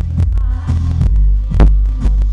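Live pop song played through a concert PA and recorded from the crowd, dominated by a heavy booming bass beat, with one loud hit about one and a half seconds in.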